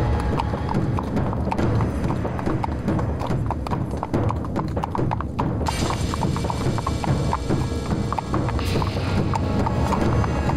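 A ridden horse's hooves clip-clopping in quick, steady hoofbeats, over background music that turns brighter a little after halfway through.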